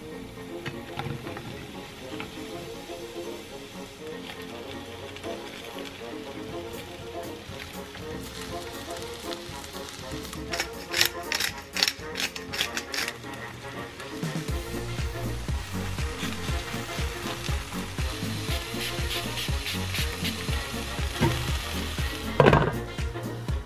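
Garlic and then brown oyster mushrooms sizzling in olive oil in a frying pan, with a run of sharp crackles about ten to thirteen seconds in. Background music plays over it, with a steady beat coming in after about fourteen seconds.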